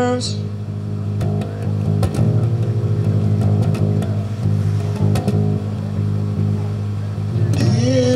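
Live band playing an instrumental passage led by electric bass guitar, holding steady low notes, with drum and cymbal strikes. The singing comes back in near the end.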